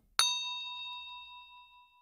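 Notification-bell sound effect from a subscribe-button animation: right after a click, a single bright bell ding strikes and rings out, fading away over about two seconds.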